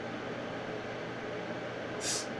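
Steady background hiss of room tone with a faint low hum.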